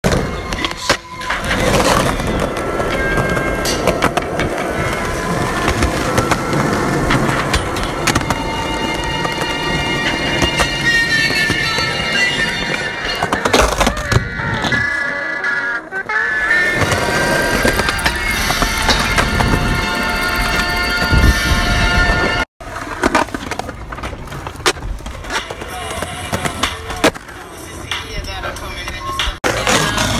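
Skateboard wheels rolling on concrete, with sharp clacks of the board popping and landing, over background music. The sound drops out for an instant about four-fifths of the way through.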